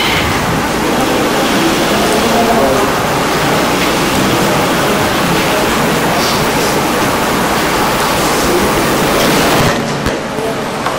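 A loud, steady hiss with faint, indistinct voices underneath.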